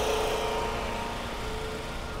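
Steady mechanical hum of a running motor from a parked food truck, with a few fixed tones, slowly fading.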